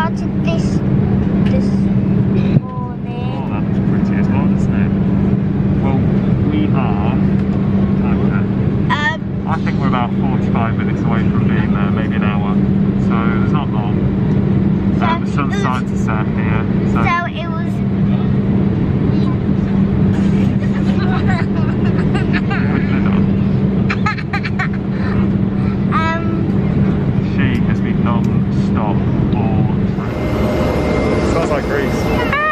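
Steady in-flight cabin drone of a Boeing 787 Dreamliner: a constant low hum under a rushing noise, with indistinct voices over it. The level dips briefly a few times.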